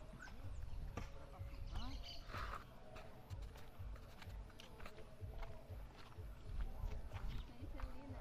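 Footsteps on a dry dirt path, with wind rumbling on the microphone and a few faint parakeet chirps in the first couple of seconds.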